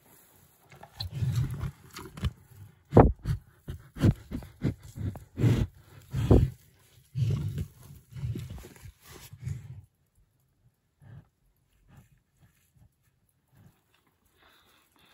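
A Jersey heifer feeding from a plastic tub close to the microphone: hay rustling, nosing and chewing, with a string of sharp knocks as its head bumps the tub and the phone. It stops about ten seconds in, leaving only a few faint ticks.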